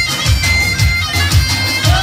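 Turkish folk dance music for a halay line dance: a shrill, reedy wind melody held on long high notes over a steady low drum beat.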